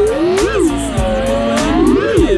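FPV quadcopter motors whining, their pitch surging up about half a second in, dropping low and steady, then climbing again near the end as the throttle is worked through a flip. Music with a steady beat plays underneath.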